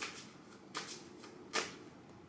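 A deck of message cards being shuffled by hand: a few short brushing strokes of cards sliding against each other, the strongest about one and a half seconds in.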